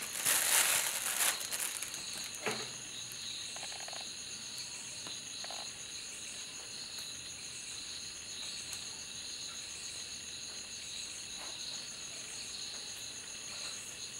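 Steady high-pitched chirring of insects in the background. A brief loud rustle comes in the first two seconds.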